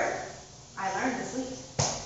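A person's voice, not clearly worded, followed near the end by a single sharp click.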